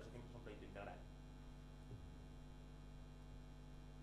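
Near silence with a steady low electrical mains hum.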